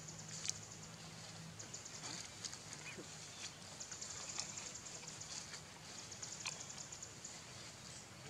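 High-pitched chirring of insects in trains of rapid ticks that start and stop every second or two, over a low steady hum, with a few sharp clicks and crackles.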